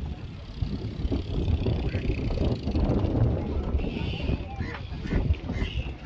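Wind buffeting the phone's microphone while riding a bicycle: an uneven low rumble, with faint voices mixed in.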